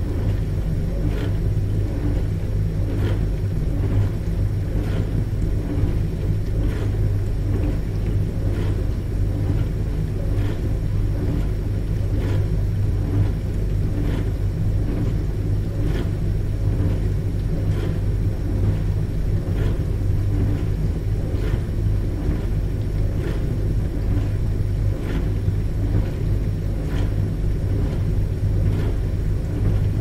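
Dishwasher running through its wash cycle: a steady low hum from the pump, with a brief splash of water coming round about every two seconds.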